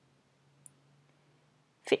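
A single faint, short computer mouse click over near-silent room tone with a low hum. A woman starts speaking right at the end.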